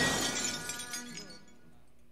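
Glass and debris shattering from a rifle shot in a movie soundtrack, the pieces tinkling and clattering down and dying away over about a second and a half.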